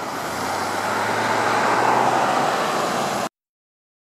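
Road traffic: the steady noise of cars and their tyres at an intersection, with a low engine hum, swelling as a vehicle passes and cutting off abruptly a little over three seconds in.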